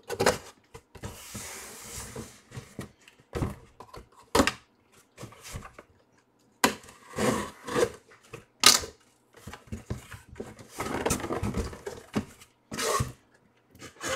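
A cardboard shipping box being handled and opened: irregular knocks, scrapes and rustles of cardboard, with a longer rustling scrape about a second in and another about eleven seconds in.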